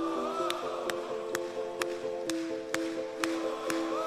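Live band music in an instrumental passage without vocals: sustained keyboard chords that change every second or so, a wavering higher lead line, and a sharp percussive tick about twice a second.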